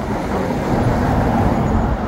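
Steady noise of interstate traffic passing close by: the tyres and engines of cars in the near lanes.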